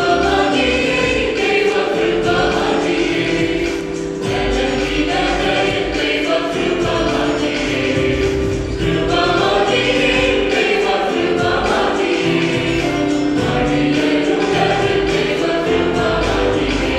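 Mixed choir of men's and women's voices singing a Malayalam Christian hymn in harmony, with electronic keyboard accompaniment and a steady beat.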